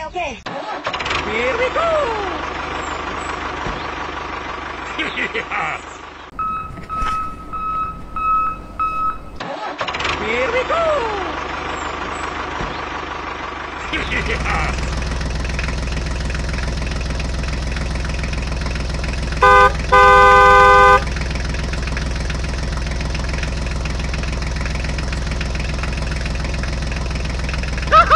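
Squeaky, sped-up cartoon voices chatter, with a steady electronic phone-like beep tone in between. Then a tractor engine sound starts about halfway through and runs steadily. Partway through, a horn honks twice, once short and then once longer.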